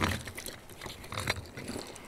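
Quiet handling sounds as shotgun cartridges are picked apart by hand: a sharp click at the start, then scattered small clicks and rustles.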